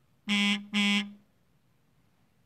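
Two short electronic buzzes in quick succession, each about half a second long at one steady low pitch.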